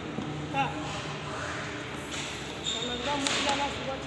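Rustling and swishing of a fog-light wiring harness in plastic corrugated loom as it is handled and swung about, with a short sharp rustle a little past three seconds in. Faint voices talk in the background.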